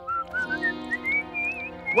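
A man whistling a short tune that climbs in pitch with small wavers, over held chords of background music.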